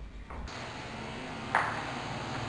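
A door's metal latch clanks once, sharply and with a short ring, about a second and a half in, over a steady background hiss.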